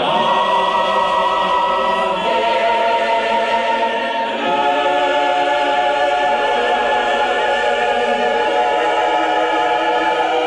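A choir singing slow, sustained chords, the harmony shifting to a new chord about two seconds in and again near the middle.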